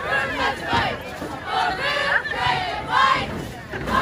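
A cheerleading squad of girls shouting a cheer in unison, in short rhythmic phrases.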